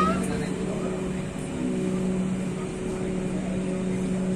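Steady low hum inside a Dhaka Metro Rail car standing at a station stop, with faint passenger voices.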